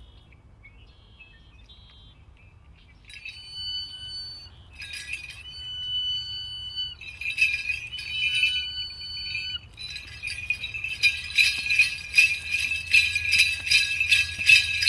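Bells on a powwow dancer's regalia jingling as he dances. About three seconds in they come in short shaken bursts with gaps between. From about eleven seconds they turn into a steady, fast, rhythmic jingling in time with his steps, growing louder.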